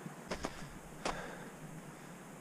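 Three sharp clicks: two close together about a quarter-second in and one about a second in, over a steady low hiss.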